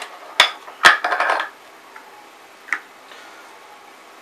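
Hard plastic knocks and clicks as the filler cap on top of a small home espresso machine is unscrewed and set down: two sharp knocks in the first second, the second the loudest, a brief rattle after it, and a lighter click later.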